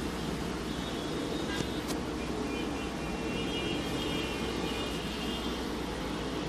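Steady background noise with a low hum and faint high tones, and a faint click about two seconds in.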